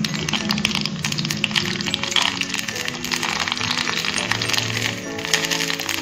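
Background music with a steady melody, over the crackling sizzle of a puri deep-frying and puffing up in hot oil in a wok.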